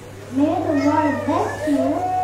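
A young girl speaking into a handheld microphone through a church PA, her high voice starting after a short pause. A steady low electrical hum runs underneath.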